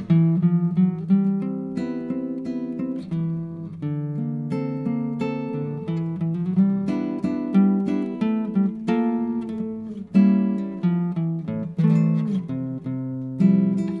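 Acoustic guitar music: plucked notes and chords, one after another, each ringing and dying away.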